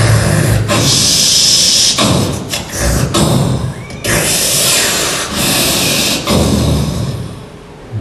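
Bursts of harsh buzzing and hissing noise broken by short pauses, dropping away near the end: a staged electric-shock sound effect for a mock conduction test.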